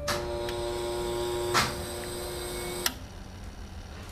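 X-ray machine humming steadily during an exposure, with a click about one and a half seconds in, then cutting off with a click after about three seconds.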